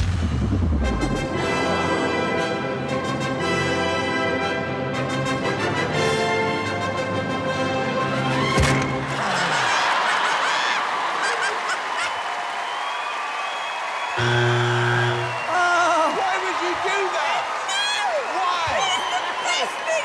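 A prop stage cannon fires with a sudden loud bang at the start, under dramatic music that runs through. There is a single thud about eight and a half seconds in, and crowd noise joins the music from about ten seconds in.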